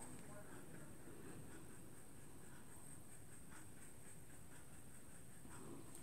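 A paintbrush stroking faintly over mixed media board, against quiet room tone.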